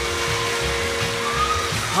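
Instrumental rock and roll band music: a held chord over a steady, pulsing beat, the chord stopping near the end.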